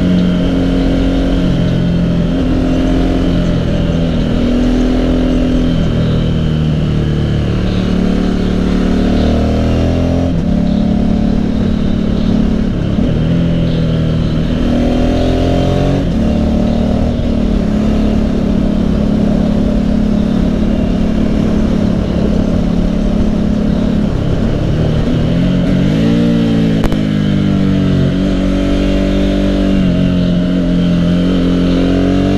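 Motorcycle engine running under way, its note rising and falling with the throttle, with a quick climb in revs near the end, over steady wind noise.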